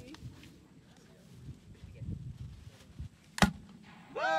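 An air-pressure potato gun firing once, a single sharp pop about three and a half seconds in, after faint low handling noise.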